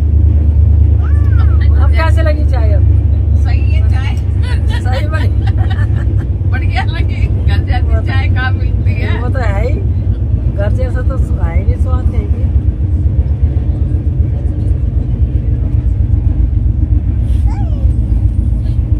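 Passenger train coach interior: a steady low rumble from the running train, with people talking over it.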